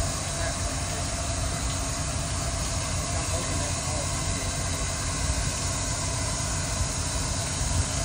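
A steady low rumble and hiss with a faint steady hum under it.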